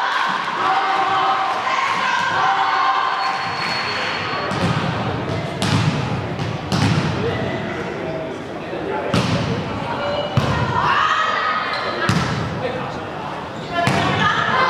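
A volleyball is struck and bounced on a sports-hall floor: about six sharp thuds with echo over the second half, amid shouts from players and spectators. A short whistle sounds about four seconds in.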